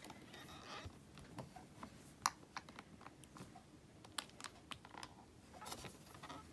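Faint, scattered light clicks and taps of crafting gear being handled: a clear acrylic stamp and a stamp-positioning tool. One sharper click comes a little over two seconds in.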